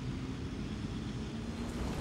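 Steady low rumble of road traffic in a town street.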